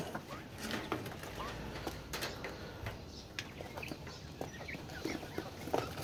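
Faint clicks and taps of plastic PVC fittings being handled, with a few soft chirps from quail in the cage.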